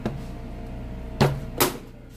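Two sharp knocks close together, a little over a second in, over a steady low hum.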